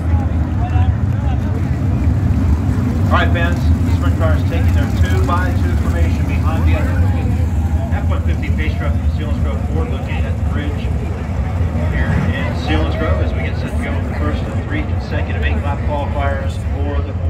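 A field of 410 sprint cars' V8 engines running at pace-lap speed, a steady low rumble, with people talking nearby.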